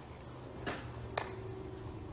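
Low steady background hum of a home-video recording, with two short sharp clicks about half a second apart, the second with a brief ring.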